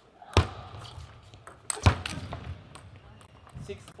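Table tennis rally: sharp knocks of the ball off the bats and the table, ringing in a large hall. The two loudest knocks are about a second and a half apart.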